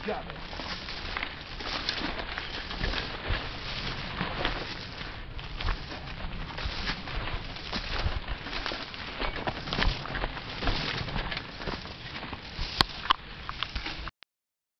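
Footsteps crunching and scuffing through dry leaf litter on a steep forest trail, with mountain bikes being walked alongside, an uneven run of crackles and knocks. Two sharp clicks stand out near the end.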